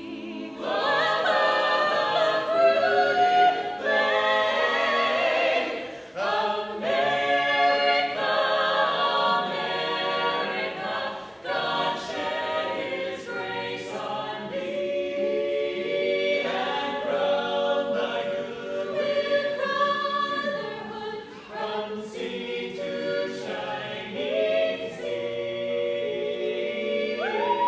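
A cappella vocal ensemble of men's and women's voices singing in harmony with no instruments, under a reverberant dome. The phrases are broken by brief breaths.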